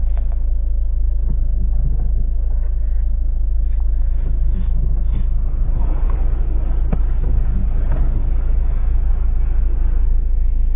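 A passenger train passing over a level crossing, heard from inside a stopped car: its noise swells about five and a half seconds in and fades again after about three seconds, over a steady low rumble. A single sharp click comes near the middle of the pass.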